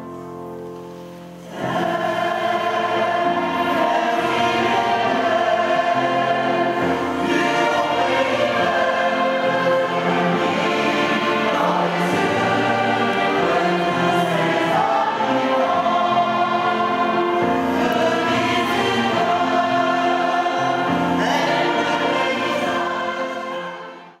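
Choral music: a choir singing sustained notes, soft at first, then swelling to full voice about a second and a half in and holding steady until it fades out at the end.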